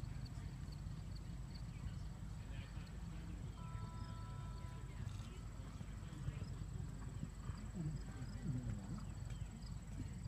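Outdoor arena ambience with a steady low rumble of wind on the microphone and a horse's hoofbeats, with faint voices. About three and a half seconds in, a steady tone sounds for about a second and a half.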